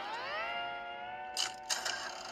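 A single slide-guitar note that glides upward in pitch and then is held, dying away about a second and a half in.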